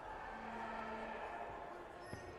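Sports-hall background din of many indistinct sounds, with a short steady low tone lasting under a second starting about a third of a second in.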